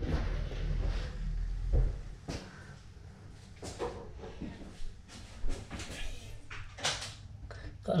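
A few soft knocks and handling clicks in a small room, with a low rumble in the first two seconds and brief faint voices.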